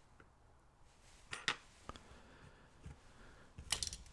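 Small metallic clicks and taps of steel tweezers and lock pins against a pin tray and lock cylinder as the pins are laid out: a pair of clicks about a second and a half in, a couple of single ticks, then a louder cluster of clicks near the end as the tweezers are set down.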